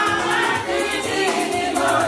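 Festive music: many voices singing together like a choir over a quick, steady percussion beat.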